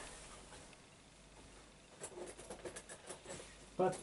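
Faint, quick light clicks and taps, a dozen or so over about a second and a half in the second half, over low room hiss. A voice starts at the very end.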